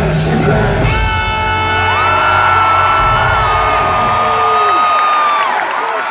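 Live pop-rock concert on a phone microphone: the band's dense music thins out about a second in, and long held whoops and screams from the audience ring out over it, overlapping at different pitches. Each ends in a falling glide, the last about five and a half seconds in.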